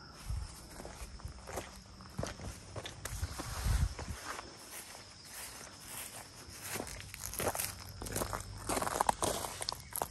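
Footsteps on gravel, uneven steps with a couple of heavier low thuds, one just after the start and one about four seconds in.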